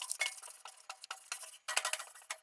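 Wire grill brush scrubbing the metal cooking grate of an offset smoker, scraping off cooked-on build-up in a quick run of irregular, scratchy strokes.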